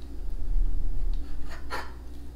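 A kitchen knife cutting through a chocolate-topped sponge biscuit on a wooden cutting board: a low knock about half a second in, then a short scrape of the blade near the end.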